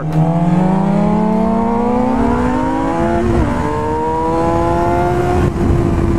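2006 Suzuki GSX-R inline-four with a Yoshimura exhaust, accelerating hard out of a corner: the engine note climbs steadily for about five seconds, with a brief wobble about three seconds in, then holds and eases slightly near the end. Wind rush runs underneath.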